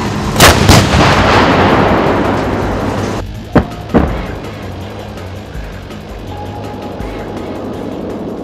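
152 mm DANA self-propelled howitzers firing: two loud reports about a third of a second apart, followed by a long rolling echo. About three seconds later two more sharp bangs come, again close together.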